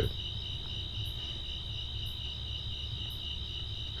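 Crickets trilling steadily and high-pitched, over a low background hum.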